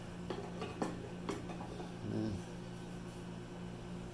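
A few light clicks and knocks as the lid clamps of a pressure pot are tightened with a wooden lever, over a steady low hum.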